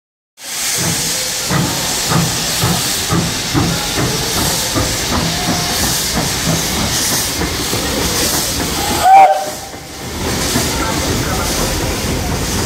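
Er-class steam locomotive Er-794-12 pulling away, with steam hissing and its exhaust chuffing about twice a second. A brief, very loud burst about nine seconds in.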